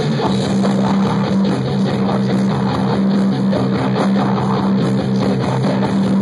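Live metal band playing an instrumental passage: electric guitar and bass guitar over a drum kit, loud, with one low note held throughout just after the start.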